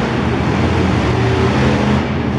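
Monster truck's supercharged V8 running steadily at part throttle as the truck turns across the dirt, its pitch rising and falling a little.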